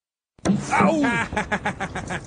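A brief silence, then a person laughing loudly in a quick run of pitched bursts.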